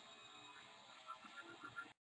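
Near silence, with a few faint small ticks in the second half.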